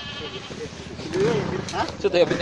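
Men's voices calling out and talking, getting louder about a second in, with a wavering, strained call near the start.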